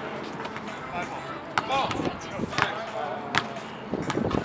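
A basketball bouncing on an outdoor hard court: a few sharp strikes about a second apart, with players' voices calling out around them.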